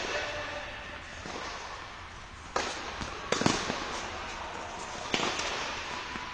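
Tennis ball struck by rackets and bouncing on a hard court during a rally. Each shot is a sharp pop that echoes around a large indoor dome. The hits come a couple of seconds apart, with the loudest pair in the middle.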